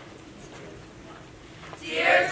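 A hushed hall with faint low voices, then a large group of young voices starts singing together loudly near the end.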